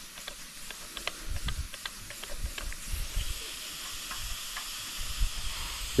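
Steady hiss of compressed air flowing through a cylinder leak-down tester into a pressurised cylinder of a Briggs & Stratton Intek V-twin and leaking out past it, a cylinder reading about 10% leakage, within spec. The hiss grows a little stronger about halfway, with light clicks from the tester being handled.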